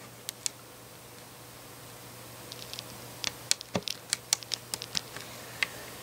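Small LEGO plastic pieces clicking as they are handled and set down on a tabletop: a couple of light clicks near the start, then a run of quick, irregular clicks from about halfway through.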